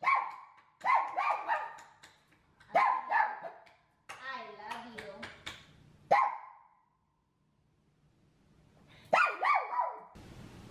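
Small pug-mix dog barking in short clusters of two or three sharp barks. About four seconds in there is a longer wavering whine-like call, then one more bark and a brief quiet spell before a last burst of barks near the end.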